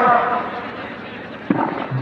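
Low, steady murmur of a crowd of spectators at a football ground, broken by one sudden sharp knock about one and a half seconds in.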